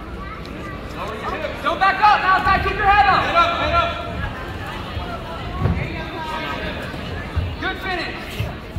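Spectators shouting and cheering during a wrestling takedown, many voices overlapping for about two seconds, then quieter crowd chatter with a couple of dull thumps.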